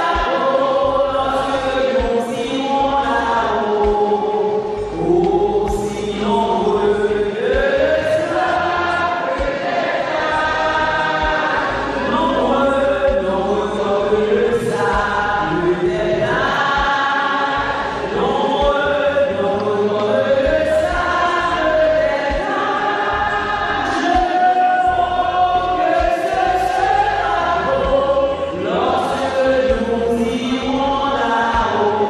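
Many voices singing a slow hymn together, with long held notes.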